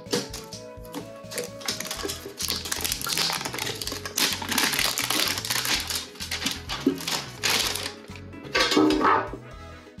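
Background music with a steady bass beat, over a run of clicks and rustling from hands working open a metal Pokémon trading card tin.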